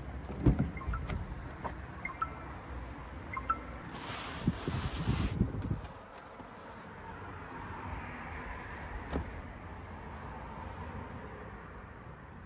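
Hands working a car's exterior door handle and latch, with a sharp knock about half a second in and a few light clicks after. A louder stretch of rustling handling noise comes around four to six seconds in, and there is a single click near nine seconds.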